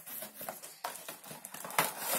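Cardboard and plastic toy packaging rustling and scraping as the toy is pulled free of its box, with a louder crackle near the end.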